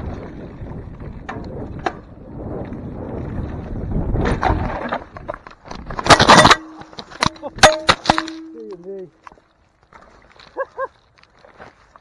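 A mountain bike rolls fast down a dirt trail with rushing tyre and wind noise, then crashes about six seconds in: a loud tumbling impact followed by a few sharp knocks from the bike and rider hitting the ground. Afterwards the rider makes short groans.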